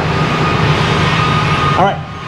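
Steady mechanical noise of sawmill machinery running, a low hum with a faint high whine over it.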